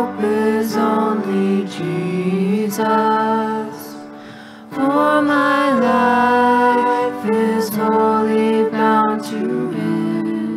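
Worship team singing a worship song with instrumental accompaniment, phrase by phrase, with a short breath between lines about four seconds in.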